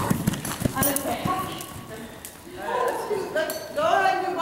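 Hoofbeats of a horse on dirt arena footing, passing close by: a quick run of knocks in about the first second. After that a person is talking.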